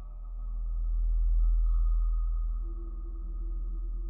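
Mutable Instruments modular synthesizer playing an ambient drone: a very deep bass tone swells to its loudest about halfway through, then eases off, over a steady higher tone. A mid-pitched held note comes in near the end.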